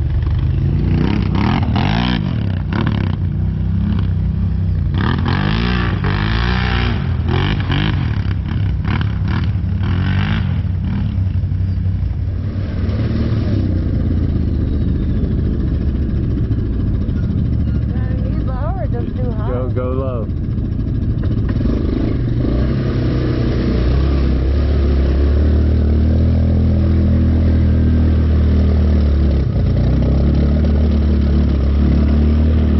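ATV engine running and revving as the quad rides through mud; the engine note gets louder and steadier about three-quarters of the way through.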